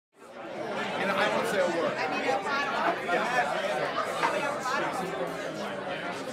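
A group of people chatting over one another, several voices at once, fading in over the first second.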